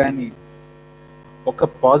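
Steady electrical mains hum, a buzz of many evenly spaced tones, heard on its own for about a second in a pause between a man's words. His speech ends just after the start and comes back about a second and a half in.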